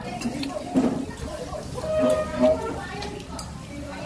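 Indistinct talking at a meal, with a few light clinks of plates and cutlery.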